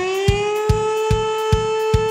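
An alarm siren finishing its rise in pitch and then holding one steady tone, over a steady kick-drum beat of about two and a half thumps a second: the opening of a children's song about the fire brigade.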